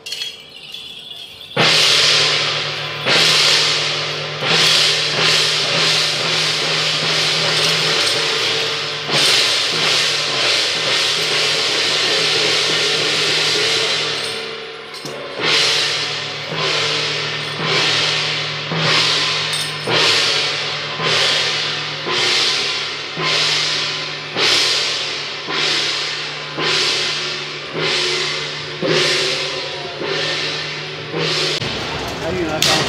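Temple-procession percussion of hand cymbals and gongs accompanying a jiajiang troupe: a sudden burst of loud crashes, continuous crashing for about twelve seconds, then steady strikes slightly more than one a second, each ringing on briefly.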